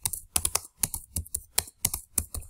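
Typing on a computer keyboard: a quick, uneven run of keystrokes, about five or six a second, as a short line of text is typed.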